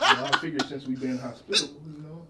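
A man's voice: low, drawn-out muttering held at one pitch, broken by a short sharp vocal sound about one and a half seconds in.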